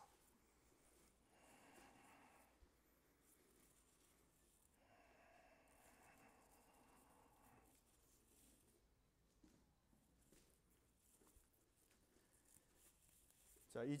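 Near silence: room tone, with two faint, slow breaths, one short about a second in and one longer about five seconds in, as a relaxed exhalation in a resting pose.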